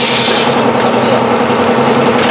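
Pouch packing machine running with a steady hum and a continuous mechanical rattle, while the turning plate of its cup filler carries macaroni pieces.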